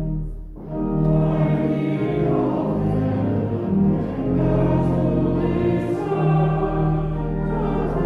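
Congregation singing a hymn with organ accompaniment. A held organ chord breaks off just after the start, and the singing comes in under a second later.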